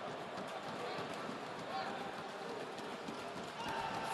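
Basketball arena ambience: a steady murmur of the crowd, with players' footsteps on the hardwood court.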